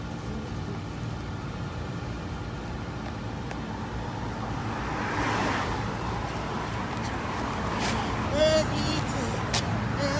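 Street traffic: steady road rumble, with a car passing about five to six seconds in. A short pitched sound stands out about eight and a half seconds in.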